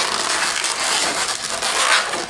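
Inflated latex 260 modelling balloons rubbing against each other as a bubble is twisted around and locked into a pinch twist, a continuous dense rubbing noise that swells toward the end.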